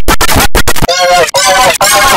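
A loud, distorted mash of several pitch-shifted copies of one audio track played on top of each other, stuttering with abrupt brief dropouts. About a second in, a pitched, voice-like line stands out from the clutter.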